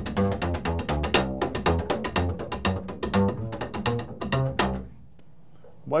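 Upright bass played with slap technique: plucked bass notes mixed with rapid, sharp clicks as the strings pop against the fingerboard and the palm slaps down on them. The run stops about five seconds in.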